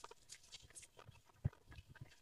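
Quiet, with a few faint ticks and one short thump about one and a half seconds in.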